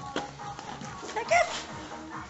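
Background music playing, with one short, loud yelp-like animal cry about one and a half seconds in.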